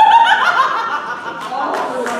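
Laughter, loudest in the first half-second and then fading, with two sharp clicks about a second and a half in.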